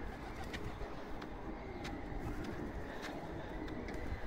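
Feral pigeon cooing, with regular footsteps on stone steps.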